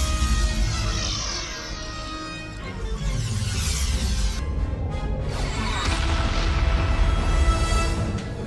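Ominous orchestral score with the Borg transporter effect: a shimmering sweep falling in pitch near the start and another sweep about six seconds in, over a deep rumble.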